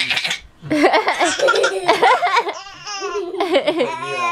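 Baby laughing, a belly laugh in several bursts with short breaks between them.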